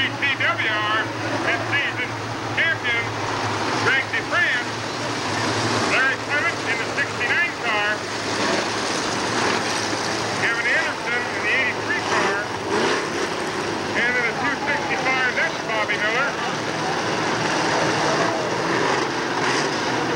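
Dirt late model race cars with V8 engines running around a dirt oval, a steady engine drone from the pack, with spectators' voices close by coming and going over it.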